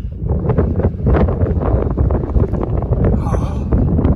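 Wind buffeting the microphone: a loud, continuous rumble with gusty crackle.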